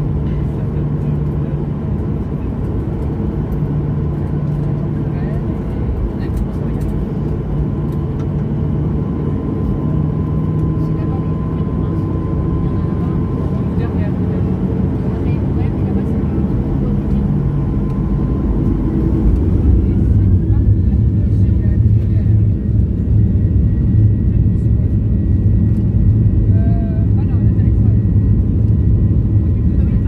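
Jet airliner engines heard inside the cabin during the runway roll, a steady hum at first. About two-thirds of the way in the engines spool up: a rising whine levels off into a steady high tone and the low rumble grows louder, as thrust is applied for takeoff.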